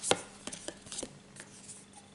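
Tarot cards handled over a wooden table: a sharp tap just after the start, then several lighter taps and clicks as a card is drawn from the deck.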